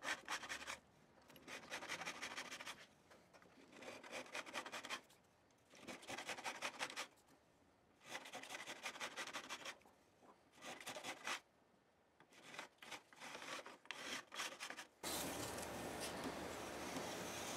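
Fret-end file rasping along the fret ends of a Fender Jazz Bass neck, in short bouts of strokes about a second long with pauses between. The fret edges are being dressed smooth before buffing.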